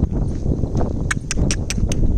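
A steady low rumble, with a quick run of five sharp clicks starting about a second in.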